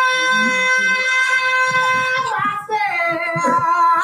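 A woman singing into a microphone, holding one long high note for about two seconds before dropping to a lower note that wavers.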